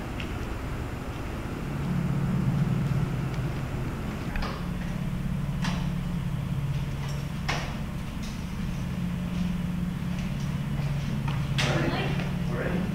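A low steady hum sets in about two seconds in and holds. Over it come a few sharp knocks, from a door and footsteps on stairs, the last and loudest near the end.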